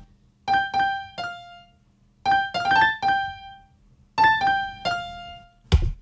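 A simple piano melody from FL Studio's FL Keys piano plugin playing back: three short phrases of three or four notes each, separated by pauses. A single sharp click comes near the end.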